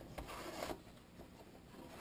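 Faint rubbing and scraping of a small cardboard box being opened by hand, with a couple of light ticks, mostly in the first second and then dying away.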